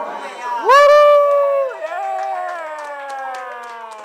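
A person's loud whoop. The voice jumps up in pitch a little under a second in, holds for about a second, then trails slowly down in pitch for a couple of seconds.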